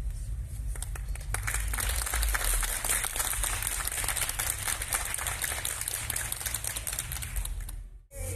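Audience applauding, starting about half a second in and continuing as a dense patter of many hands clapping, over a steady low rumble.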